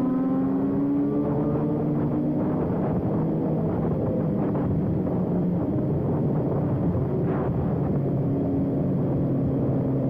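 BMW S1000RR's inline-four engine running at speed, its note rising in pitch in the first second and then holding steady, along with the engines of other sportbikes riding in the group.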